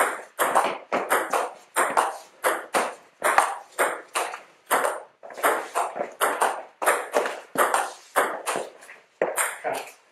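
Table tennis ball in a long rally, struck by the bats and bouncing on the table: about thirty sharp clicks in a quick, even rhythm of roughly three a second. It stops shortly before the end as the point is won.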